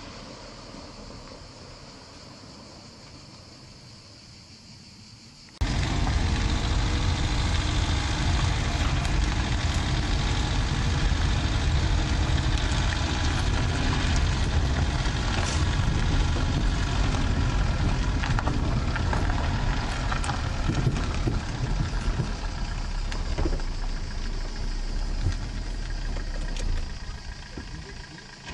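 Fiat Panda driving up close and pulling to a stop. After about five seconds of faint sound, the sound jumps suddenly to a loud, low engine and tyre rumble, which drops away near the end as the car stops.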